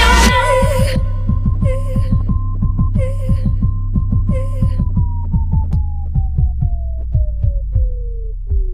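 The song's full mix cuts off about a second in, leaving an electronic outro: a held synth tone over a low throbbing hum and a run of soft, regular clicks. Three short airy bursts sound in the first half. The tone then slides steadily down in pitch.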